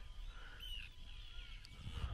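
Faint, thin wavering calls of birds, a few short chirps in the middle, over a low background rumble.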